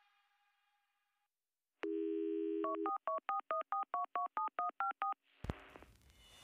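Telephone dial tone, then rapid touch-tone (DTMF) dialing: about a dozen short two-tone beeps at roughly five a second. A click follows near the end.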